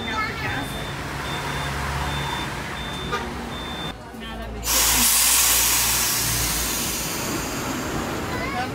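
Bus diesel engine running low with a high beep sounding in short repeated pulses. About four seconds in, the beeping stops and the sound dips. Then a loud rush of air starts, like an air-brake release, and fades over the next couple of seconds.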